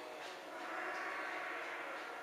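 Faint indoor room noise: a steady low murmur with a few light clicks, swelling slightly midway.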